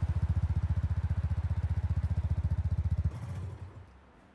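Motorcycle engine sound, a rapid, even low putter of about twenty pulses a second, that cuts off abruptly about three seconds in, leaving a brief fainter rumble that dies away.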